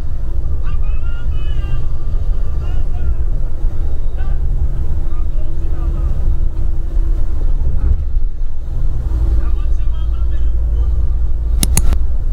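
Steady low rumble of a bus driving on an unpaved road, heard from inside the cabin, with indistinct voices at times. A quick run of sharp clicks comes near the end.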